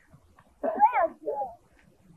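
A child's voice calling out briefly, rising then falling in pitch, with a shorter second call right after.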